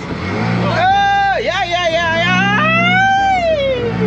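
A high voice sings a long drawn-out "la", sliding up and down in pitch, over the steady low hum of the boat's motor.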